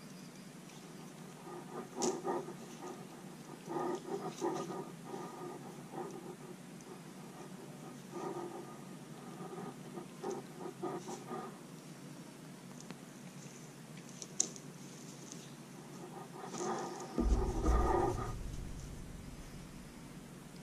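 Faint, irregular handling sounds of fishing line and a hook being worked into a clinch knot by hand: soft rubbing and rustling in short bouts with a few small ticks, and a louder spell with a low bump near the end.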